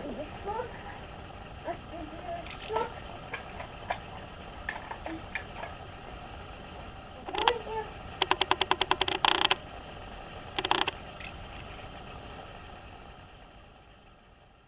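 Outdoor field recording with a steady low hum and scattered faint short chirp-like sounds, broken a little past seven seconds by a short burst, then a quick rattle of about ten strokes a second lasting just over a second, and another short burst; the sound fades out near the end.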